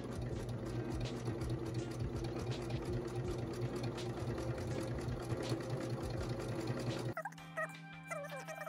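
Electric domestic sewing machine running steadily, its needle stitching fabric in a fast, even clatter over a motor hum. It cuts off suddenly about seven seconds in.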